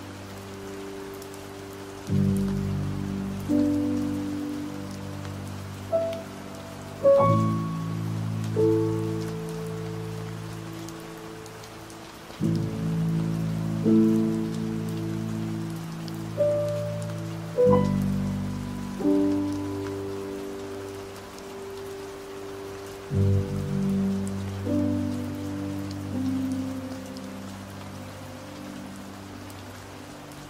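Slow piano chords over steady rain. The chords are struck a few seconds apart and each is left to ring and fade.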